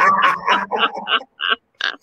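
A man and a woman laughing loudly together in quick repeated bursts, which thin out into a few short ones in the second half.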